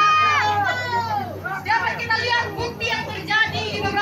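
A woman speaking loudly into a handheld microphone, drawing out a word with a falling pitch in the first second. A steady low hum runs underneath.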